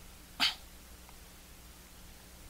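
One short, sharp burst of breath from a man, about half a second in, over a faint steady low hum.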